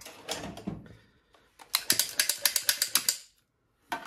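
The mechanism of a hand-held cannelloni filling gun clicking in a quick run for about a second and a half as it presses minced beef filling into a pasta tube. Fainter handling noises come just before it.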